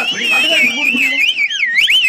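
A loud, high-pitched warbling tone that swoops up and down two or three times a second, with voices underneath.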